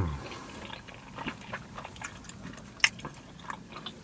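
A person chewing a mouthful of pizza close to the microphone, with faint wet mouth clicks and smacks and one sharper smack near three seconds in.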